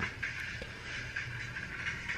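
Steady, even hiss of a small fan running, with no clicks or tones.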